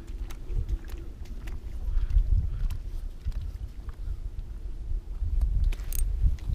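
Wind buffeting the microphone in an uneven low rumble, with a few faint clicks.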